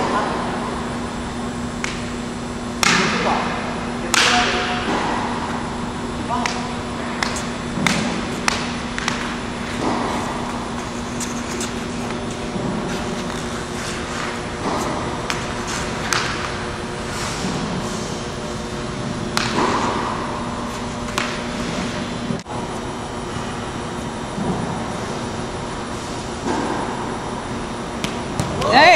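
Plastic hockey sticks knocking a tennis ball and tapping the court floor, with scattered sharp knocks, over a steady hum that stops about 22 seconds in.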